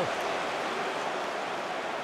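Football stadium crowd noise: a steady, even hubbub from the stands, with no distinct cheer, chant or whistle.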